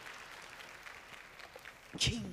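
Audience applause, faint and slowly dying away.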